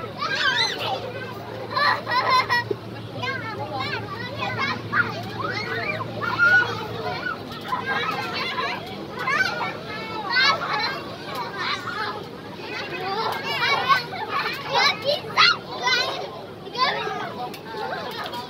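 Several young children shouting, squealing and chattering as they play together.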